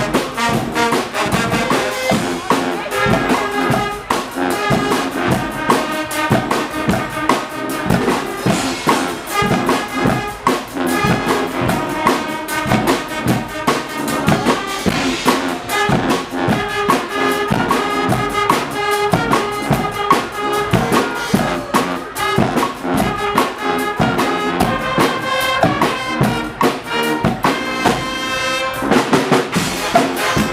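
Guggenmusik carnival band playing loud: massed trumpets, trombones, sousaphones and saxophones over a drum kit keeping a steady beat.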